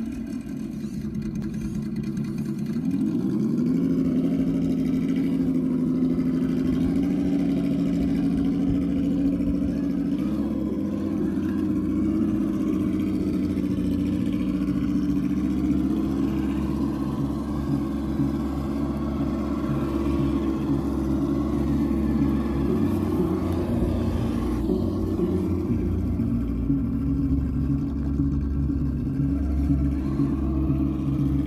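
Simulated engine sound from an ESS-Dual+ sound module on a RedCat Gen8 RC crawler, rising in pitch about three seconds in as the throttle opens, then running steadily.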